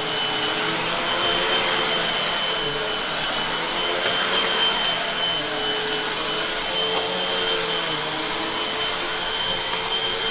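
Upright vacuum cleaner running steadily on carpet during a pre-vacuum, a constant high whine over a lower motor hum that shifts slightly in pitch as it is pushed back and forth.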